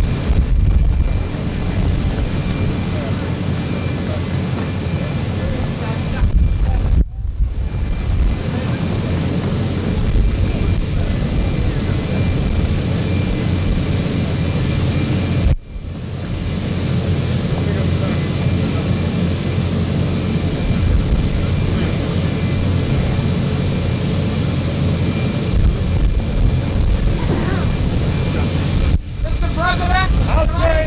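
Loud, steady roar of jet aircraft engines with crowd voices mixed in. The sound drops out sharply for a moment about seven seconds in and again about halfway through.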